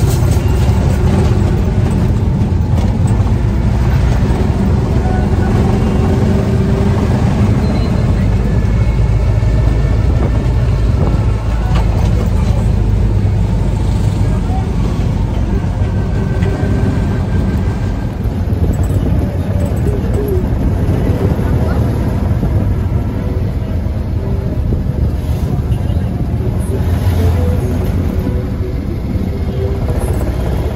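Car in motion heard from inside the cabin: a steady, loud low rumble of engine and road noise, with indistinct voices over it.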